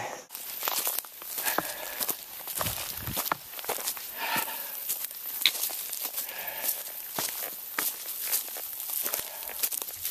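Footsteps of a hiker walking at a steady pace on a leaf-littered, stony forest trail: an irregular run of crunching and crackling steps on dry leaves and stones.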